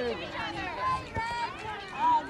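Several children's and adults' voices overlapping outdoors, calling out and chattering without clear words, with one short thump a little after a second in.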